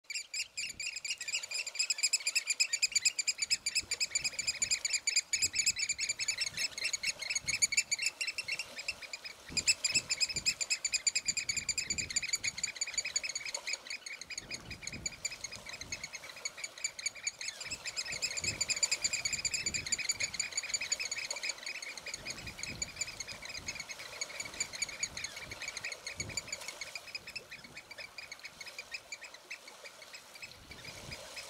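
Birds calling in a dense, rapid, continuous chatter. It breaks off briefly about eight seconds in and grows weaker in the last third, with scattered soft low thumps beneath.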